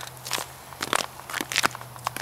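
Footsteps crunching on snow and ice, a run of irregular short crunches as a person walks.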